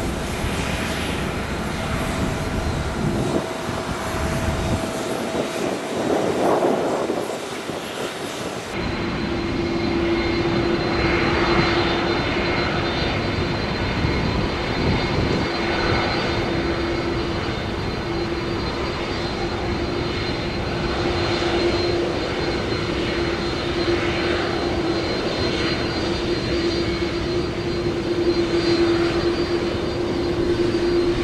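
Jet airliner engines running at low taxi power, a steady whine over a low rumble. About nine seconds in the sound changes abruptly to a taxiing Airbus A330 whose engines hold one even humming tone.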